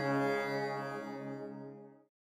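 Electronic keyboard holding the final note of a Carnatic piece: one low, steady sustained tone that fades out and stops at the end.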